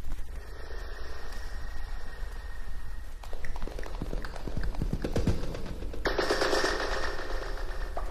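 Electronic tape sounds from a 1969 piece for voice, orchestra and tape: sharply filtered bands of hiss switch on, a rapid crackle of clicks starts about three seconds in, and a louder band of hiss cuts in abruptly about six seconds in.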